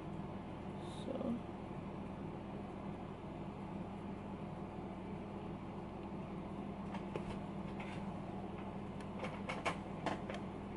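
Quiet room tone with a steady low hum, broken by a few faint clicks and rustles from handling snap-shut hair clips, with a cluster of sharper clicks near the end.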